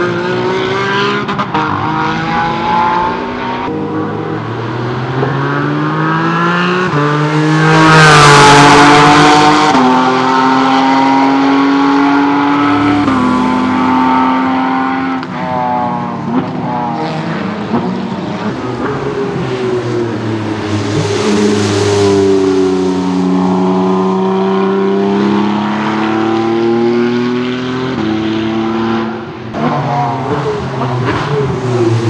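Race car engines revving hard as cars pass one after another, with quick stepped gear changes and the pitch falling as each car goes by; the loudest pass comes about eight seconds in. Near the end the Porsche 718 Cayman GT4 RS Clubsport's naturally aspirated flat-six comes toward the listener.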